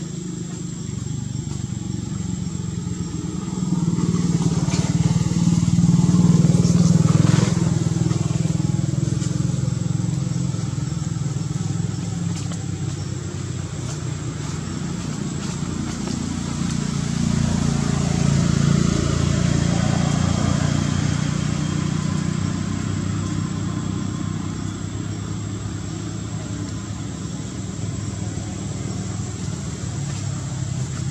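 Low motor-vehicle engine drone that swells twice, a few seconds in and again about two-thirds of the way through.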